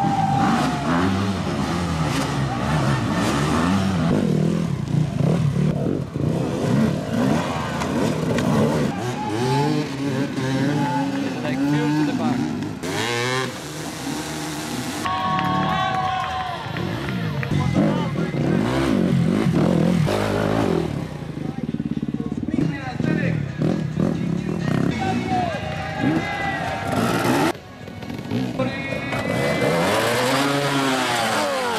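Enduro dirt bike engines revving and blipping hard as riders climb log obstacles, their pitch rising and falling, with people's voices throughout.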